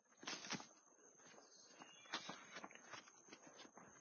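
Near silence with faint footsteps and rustling on a leafy woodland trail, a couple of soft steps just after the start and a few lighter ones later.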